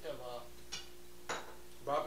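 Two short, sharp clinks about half a second apart, from hard objects being handled on a kitchen counter. A brief murmur of a man's voice comes at the start and again at the end.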